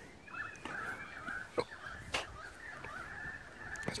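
Birds calling faintly in the background, with two short clicks near the middle.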